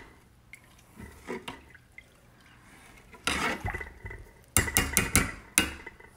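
A metal spoon stirring thin lentils and water in a stainless-steel saucepan, quietly at first. About three-quarters of the way through comes a quick run of sharp metal clinks of the utensil against the pot.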